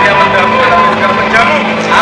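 Men speaking Indonesian, a spoken good-luck message, over held notes of a background music bed.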